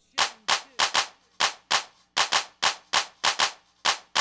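A rapid, irregular series of sharp, cracking bangs used as a mixtape transition effect: about fourteen in four seconds, each with a short ringing tail, with silence between them.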